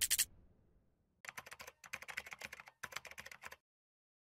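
Keyboard-typing sound effect: three short runs of rapid key clicks, each lasting about half a second, starting a little over a second in. A brief burst of sound comes right at the start.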